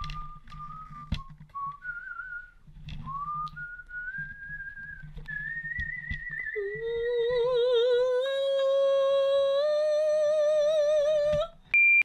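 A person whistling a thin, wavering note that climbs in steps. About six and a half seconds in, a louder, lower held note with a wobbling vibrato takes over, then cuts off suddenly near the end.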